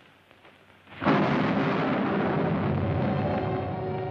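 About a second of near silence, then a sudden loud rushing rumble like a thunder effect sets in and holds steady, with orchestral music tones rising through it toward the end: a dramatic scene-change cue.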